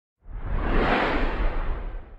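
A whoosh sound effect, a noisy rush with a deep low end. It swells in just after the start and tails off near the end.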